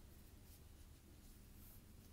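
Faint paper rustle of a photobook's glossy cover being turned back by hand, otherwise near silence.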